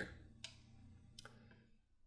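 Near silence with two faint clicks of a computer mouse, about half a second and a second and a quarter in.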